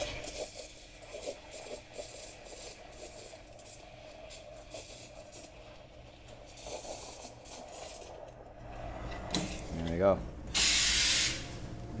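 Espresso machine steam wand hissing into a metal milk jug, heating a coffee cocktail to around 52 degrees until it is hot to the touch. A short, much louder burst of hiss comes near the end.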